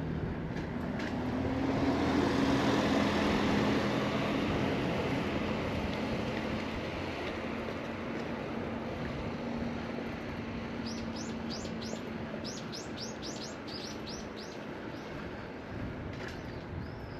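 A motor vehicle's steady engine and road noise swelling to its loudest a few seconds in and slowly fading. In the last few seconds a small bird gives a quick run of about a dozen high, falling chirps.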